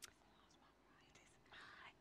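Near silence through the church's microphones: a faint click at the start, then a faint breathy, whisper-like voice sound close to a microphone in the last half second.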